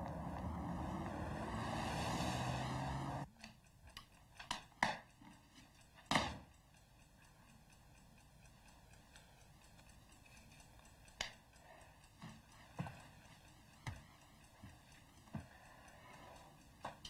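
Street traffic, a vehicle's engine running, for about three seconds until it cuts off abruptly. Then a quiet room with a few scattered soft knocks and clicks.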